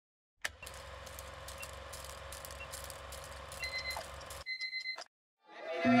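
A click, then steady electronic hiss and hum with faint ticks. A short high beep comes about three and a half seconds in, and a quick run of short high beeps follows near the end. After a moment of silence, music fades in.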